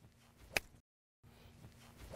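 Golf iron striking a ball off turf: one sharp crisp click about half a second in, with a short rising swish of the downswing just before it. Then the sound drops out completely for a moment.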